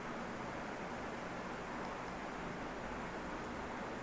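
Steady low background hiss from the recording microphone, with no distinct sounds standing out.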